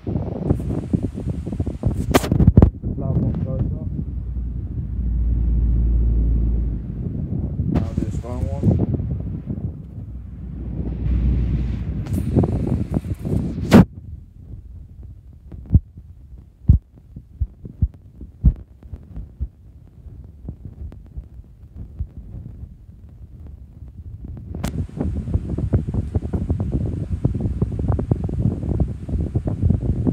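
Blaupunkt and Schallen 16-inch plastic pedestal fans running on medium, their airflow buffeting the microphone with a rumbling rush that comes and goes. There are a few sharp clicks, the loudest about two seconds in and again near the middle, with a quieter spell of scattered ticks before the rush builds again near the end.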